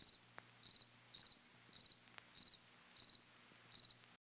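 Crickets chirping: short, high, pulsed chirps repeating evenly, a little under two a second.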